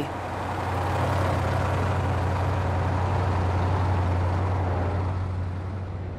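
Steady low engine rumble of heavy military trucks driving past in a parade, swelling up over the first second and fading toward the end.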